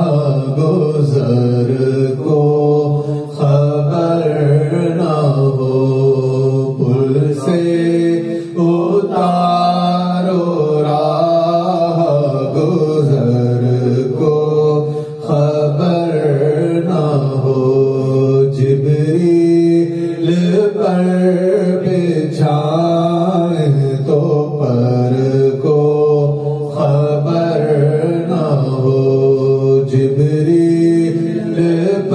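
Sufi zikr: men's voices chanting continuously, one voice through a microphone carrying a wavering, sung melody over a steady low chant.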